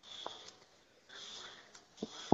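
A near-silent pause on a phone call: faint line hiss with one soft click about a quarter second in.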